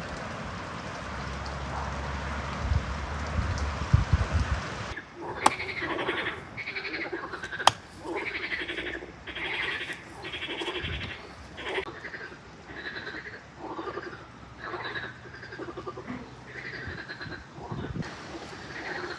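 Frogs calling over and over in short croaking bouts, about one or two a second, from about five seconds in. Two sharp knocks of a knife on a wooden cutting board sound early in the calling, and a low steady rumble fills the first five seconds.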